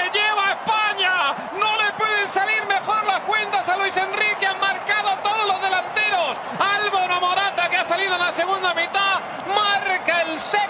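Television football commentary: a man speaking quickly and continuously in Spanish, with no pauses.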